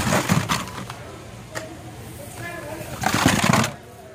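Plastic-and-cardboard Hot Wheels blister cards rustling and clacking as a hand shuffles through them in a bin, in two bursts: one at the start and a longer one about three seconds in.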